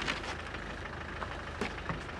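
Land Rover Defender's four-cylinder Tdi turbodiesel idling steadily, with a light click about a second and a half in.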